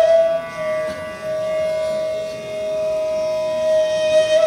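Bansuri (bamboo flute) holding one long, steady note for about four seconds. It settles a touch lower about half a second in, over a steady drone.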